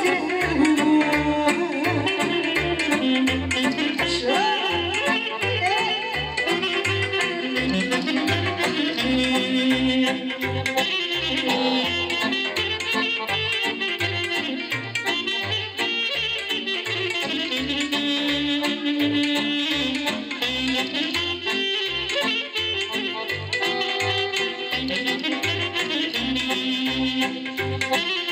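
Live saxophone playing a melody over a Korg electronic keyboard accompaniment with a steady bass beat, amplified through PA speakers.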